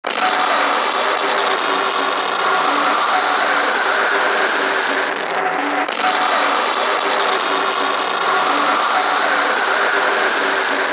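Beatless intro of a dark industrial techno track: a dense, noisy, machine-like synth texture with a rising sweep that repeats about every six seconds over short repeated synth notes.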